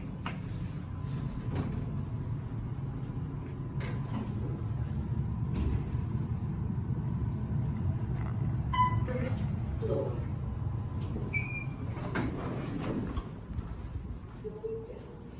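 Inside an Otis Series 4 Gen2 traction elevator car: a steady low hum with a few clicks, an electronic chime about nine seconds in, and a higher chime a couple of seconds later as the car doors slide open at the lower level.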